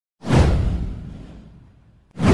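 A cinematic whoosh sound effect with a deep boom. It comes in suddenly about a quarter second in, sweeps down in pitch, and fades away over about a second and a half.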